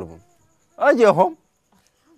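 A man's voice: one short, loud vocal utterance of about half a second, wavering in pitch, about three-quarters of a second in, with near silence around it.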